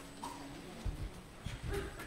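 A congregation settling in wooden church pews after sitting down: a few soft low thumps, with faint creaks and murmurs.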